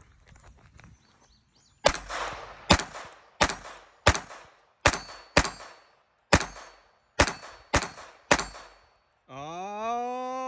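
A Walther .22 rimfire pistol firing ten shots in a string, one every 0.6 to 0.9 s, each a sharp crack with a short tail. It fires the same ammunition that gave light primer strikes in another pistol, and it fires every round without a stoppage.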